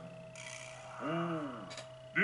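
Pachislot machine's cutscene audio: a hissing whoosh effect, with a drawn-out, rise-and-fall voiced "hoh" from the game character in the middle of it.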